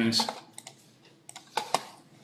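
A few short, light clicks and taps, spaced irregularly, with the loudest pair about one and a half seconds in.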